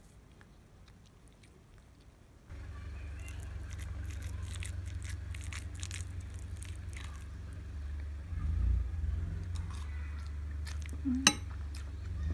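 After a faint start, a spoon clicks and scrapes in a ceramic bowl of rice over a steady low hum, with one sharp clink near the end.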